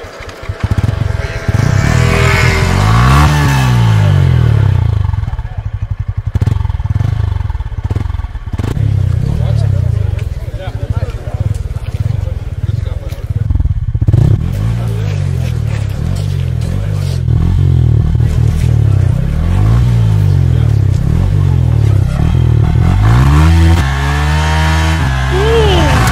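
Yamaha R15 single-cylinder motorcycle engine running, its pitch rising and falling several times as it is revved, with more glides near the end.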